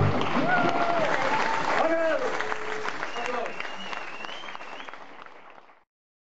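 Audience applauding and cheering, with shouts and a whistle, right after a live band's final note stops. The applause fades steadily away to nothing just before the end.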